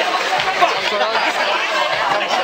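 Several people talking over one another, with no single voice clear.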